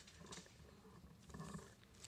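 Near silence: faint room tone with two soft, brief rustles, about a third of a second in and again around a second and a half in.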